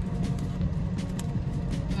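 Steady low rumble of a car heard from inside the cabin.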